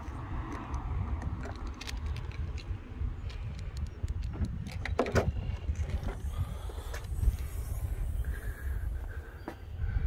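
Outdoor wind rumbling on a handheld phone microphone, with handling noise and scattered clicks as it is carried along a car. There is a louder clunk about halfway through and a faint, steady higher sound shortly before the end.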